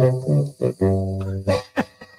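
Soundboard sound effect used as a strikeout drop: two short pitched notes followed by a long, low held note, ending in a few short sharp sounds.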